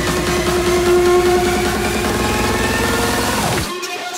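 Hardstyle dance music from a DJ set: a held synth tone over fast, evenly repeating bass pulses. Near the end the sound sweeps down in pitch and the bass cuts out, leaving a break.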